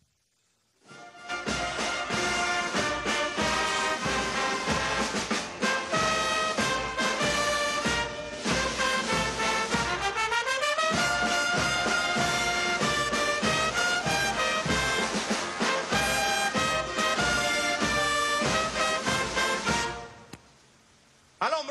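Military brass band playing the musical honours for the national flag after the order to present arms, with brass and drums. It comes in about a second in, after a moment of silence.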